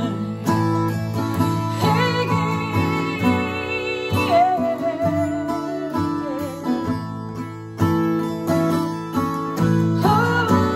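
Acoustic guitar strumming chords in a song's instrumental passage, with a held, wavering melody line over it from about two seconds in to about six seconds in.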